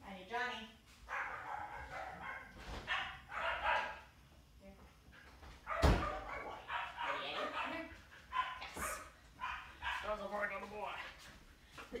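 Dog vocalizing off-camera in a series of pitched, wavering whines and yips with short gaps between them. A single sharp knock about six seconds in is the loudest sound.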